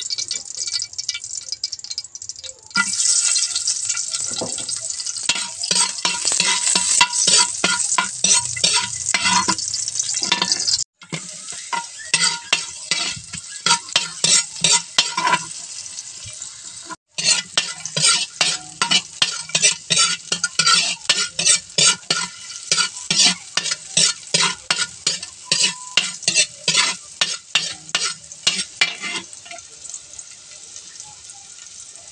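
Onion and garlic sizzling in hot oil in a metal wok, with a metal spatula scraping and clinking against the pan in quick repeated strokes as they are stirred. The sizzle rises sharply about three seconds in, and the sound breaks off briefly twice.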